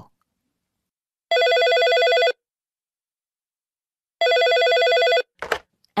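Telephone ringing twice, each ring about a second long with a fast warble, the sign of an incoming call. A short click follows near the end, just before the call is answered.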